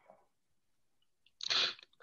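A short, sharp, breathy burst from a person about one and a half seconds in, after a faint brief noise at the start and a near-silent gap.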